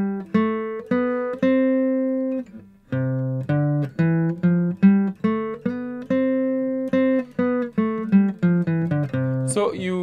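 An acoustic guitar played one picked note at a time up the C major scale in second position. About three seconds in the run stops on a ringing note, then starts again from the low end.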